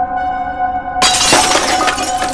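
Sustained, held-note music. About a second in, a glass-shattering sound effect cuts in: a sudden crash followed by trailing tinkles of breaking fragments.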